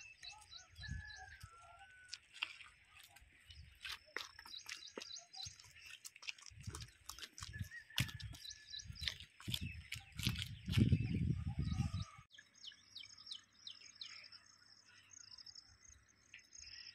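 Birds chirping and calling, over irregular low rumbling that cuts off abruptly about twelve seconds in. After the cut, a thin, high, repeated chirping goes on.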